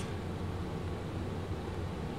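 Steady low hum with a faint even hiss: background room tone, with no distinct events.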